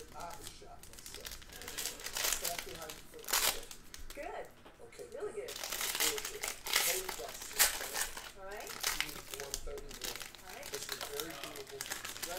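Foil wrapper of a Topps Tier One baseball card pack crinkling in several bursts as it is handled and opened by hand and the cards are slid out.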